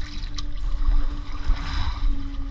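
Shallow muddy water splashing and trickling underfoot as someone wades through it, with a few small clicks and a steady low hum throughout.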